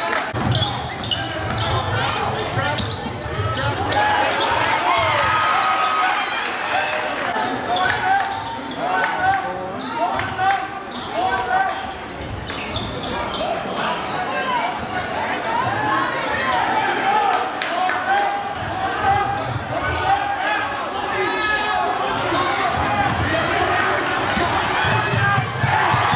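A basketball dribbled on a hardwood gym floor, its bounces mixed into continuous unintelligible voices from the crowd and players echoing in a large gym.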